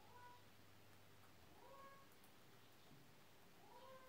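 Near silence with a cat meowing faintly three times, each meow short and rising in pitch.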